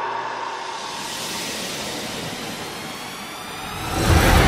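A sustained airy whoosh with faint, slowly rising tones, a sound-design sweep in a promotional soundtrack; the bass drops out until it ends.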